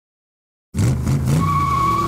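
Car engine revving with tires squealing in a burnout. It starts suddenly a little under a second in, and the squeal settles into a steady high note.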